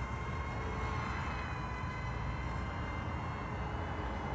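Kai Deng K130 mini egg quadcopter flying, its motors and propellers giving a steady high whine of several held tones, with wind rumbling on the microphone.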